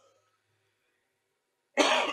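Near silence, then near the end a man gives a sudden loud cough into his hand.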